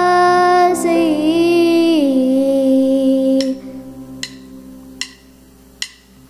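A girl singing a slow phrase solo, holding and bending long notes over a sustained keyboard chord; her voice stops about three and a half seconds in. After that only the soft keyboard tone remains, with a few light clicks roughly a second apart.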